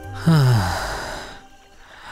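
A man's sigh: a voiced breath falling in pitch that trails off into a breathy exhale over about a second.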